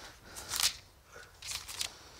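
Pages of a Bible being turned, paper rustling in two short bursts, about half a second in and again near the end.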